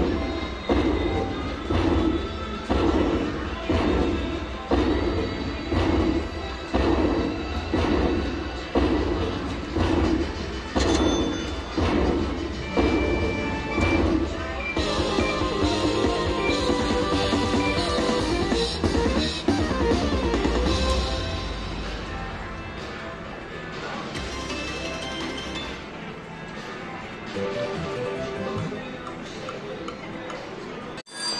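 Slot machine win-celebration music and credit count-up jingle as the bonus award tallies up. For about the first 15 seconds there is a steady beat of about one pulse a second. The tune then changes and grows quieter over the last third.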